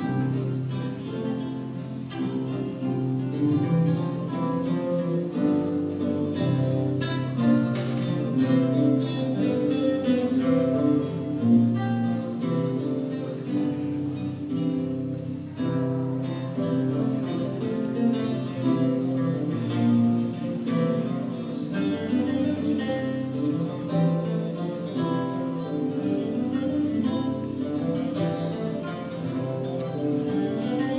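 Renaissance lute and theorbo playing a duet: a continuous stream of plucked notes over deep, ringing bass notes.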